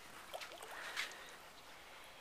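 Quiet outdoor background: a faint steady hiss with a couple of soft, brief sounds about a third of a second and a second in.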